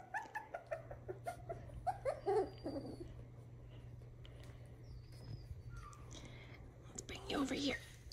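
Miniature schnauzer puppies whimpering softly: a string of short, small whimpers in the first three seconds and a louder whine near the end. A low steady hum runs underneath.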